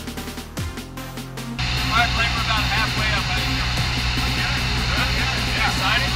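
Electronic background music with a beat for about the first second and a half, then a sudden cut to the steady drone of a small plane's engine heard inside the cabin, with indistinct voices over it.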